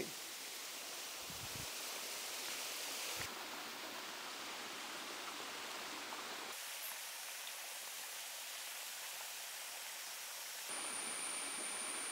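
Faint, steady hiss of rainwater trickling and running down a wet forest slope: overflow water making its way through the swales toward the next harvesting pond. The sound changes character a few times, and a thin high steady tone joins near the end.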